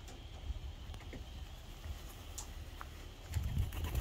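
Faint outdoor ambience: wind rumbling low on the microphone, with a few faint ticks.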